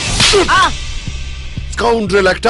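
A single hard slap across the face, one sharp crack about a quarter-second in, followed by a low, steady musical drone.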